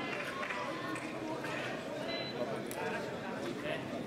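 Indistinct chatter of several voices in a large, echoing hall, with a few brief sharp clicks.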